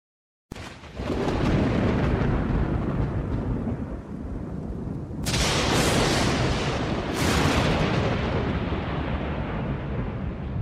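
Thunderstorm sound effect: a deep rolling thunder rumble starting about half a second in, with two loud cracks of thunder about five and seven seconds in.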